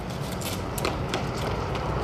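Low, steady rumble of city street traffic, with a few faint knocks about halfway through.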